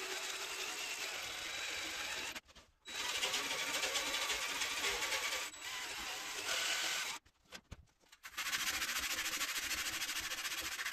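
Cordless jigsaw cutting thin marine plywood, a steady buzzing saw noise that breaks off twice, briefly about two and a half seconds in and for about a second after seven seconds.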